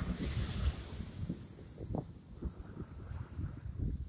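Pretty strong ocean surf breaking on a sandy beach, a steady wash of noise, with wind buffeting the microphone.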